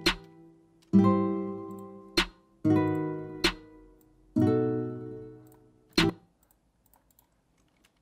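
Playback of a sampled guitar chord loop: three chords, each ringing out and fading, with a sharp chopped snare sample hitting four times over them. Playback stops about six seconds in.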